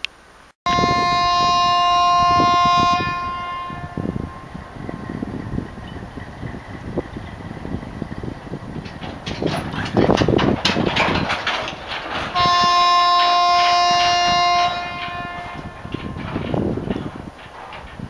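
Broad-gauge diesel locomotive horn sounding two long blasts of a two-note chord, each about two seconds, as the train pulls out slowly. Between the blasts the wagons rumble and clatter, with a run of loud knocks from the wheels and couplings.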